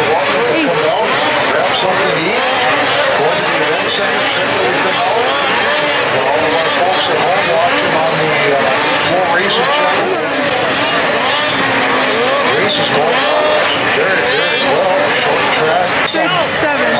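A pack of two-stroke snocross racing snowmobiles at full race pace, many engines revving up and down over one another as the sleds go round the track.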